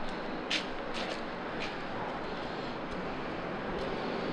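Steady outdoor city background hum with no distinct tone, broken by a few brief hissy ticks about half a second to a second and a half in, the first the loudest.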